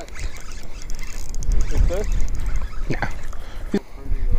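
Wind gusting across the action camera's microphone as a fluctuating low rumble, with two sharp knocks near the end.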